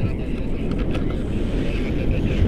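Wind from the paraglider's flight speed buffeting the camera microphone: a loud, low rushing noise without any engine tone.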